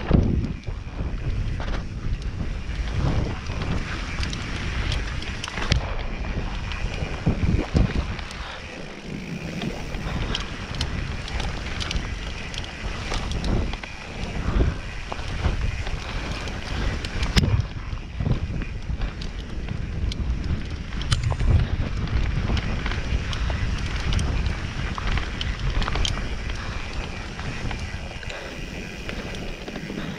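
Mountain bike rolling down a dirt trail: wind rumble on the microphone and tyre noise on dirt, broken by frequent short knocks and rattles as the bike goes over roots and rocks.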